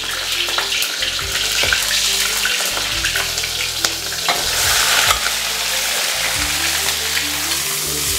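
Ginger and small chilies sizzling in hot chicken fat in a wok, with a metal spatula scraping and clicking against the pan. About halfway through, raw chicken pieces are tipped in and stir-fried, and the sizzling carries on.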